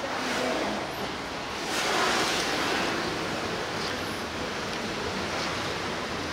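Steady rushing of water in an orca pool, swelling louder about two seconds in.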